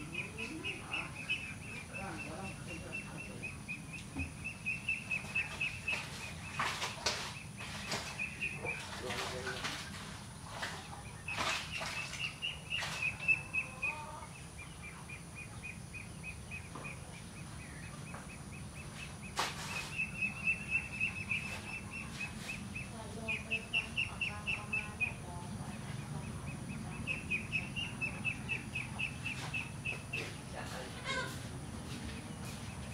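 Outdoor ambience: a high, rapidly pulsing chirping trill repeats in runs of a few seconds, over a low steady background rumble, with a few sharp clicks.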